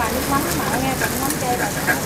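Bánh xèo (Vietnamese crispy pancakes) frying in hot pans: a steady sizzle, with faint voices talking in the background.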